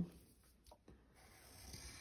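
Faint scratching of a wax crayon drawing a line on paper, starting about halfway in and growing a little louder, after a couple of soft clicks.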